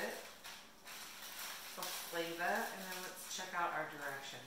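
Thin plastic packet crinkling as it is handled, followed by a person talking.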